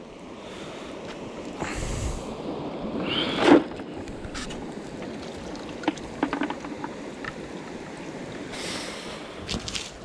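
Water splashing and dripping from a hand-thrown cast net as it is lifted out of a stream and emptied over a bucket, over the steady rush of the stream. A louder splash comes about three and a half seconds in, and scattered light taps follow in the second half.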